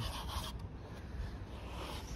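Irregular rubbing and scraping of a hand on a surfboard's deck and rail as the board is handled, over a low rumble.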